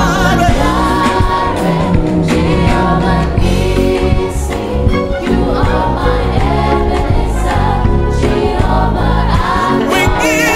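Live gospel praise music: a choir singing over a band in an Afro groove, with a heavy bass line and a steady drum beat.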